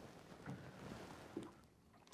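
Near silence: faint background noise with a few barely audible small sounds.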